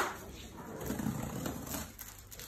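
A cardboard box being opened with scissors: a sharp snip right at the start, then the cardboard flaps and packing tape rustling and scraping as they are worked loose.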